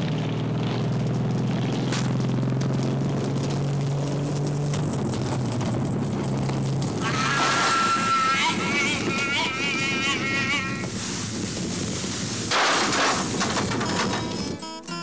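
Motorcycle engine running at a steady pitch. About seven seconds in it gives way to a louder rushing noise with a high, wavering wail lasting about four seconds, and a short rushing burst comes near the end.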